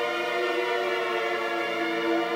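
Steinberg Materials: Wood & Water 'Stranger Ghosts' sampled pad holding a sustained chord of several steady tones.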